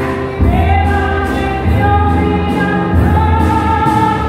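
A woman singing long, high held notes, with grand piano and upright double bass accompanying. She holds one note from about half a second in, then moves to a slightly higher one near the end.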